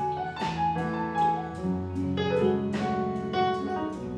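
Soundtrack music led by a piano, playing chords and melody notes that are struck and left ringing, with a new note or chord about every second.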